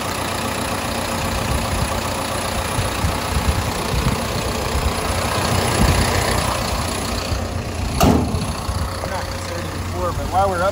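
Caterpillar 320 excavator's diesel engine idling steadily, with a single sharp knock about eight seconds in.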